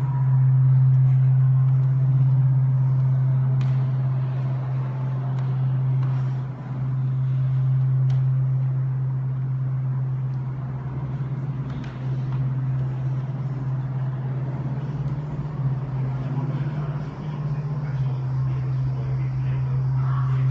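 A loud, steady low drone that holds one pitch without a break, with a few faint clicks over it.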